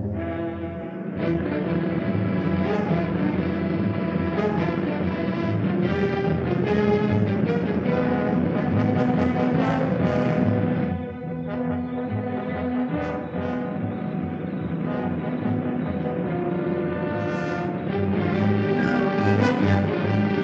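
Orchestral film score music playing in sustained, shifting chords, with a brief drop in level about halfway through.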